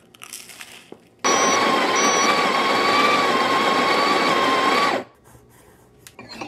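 Electric coffee grinder grinding espresso beans for about four seconds, a steady whine running through the grinding noise; it starts about a second in and cuts off sharply.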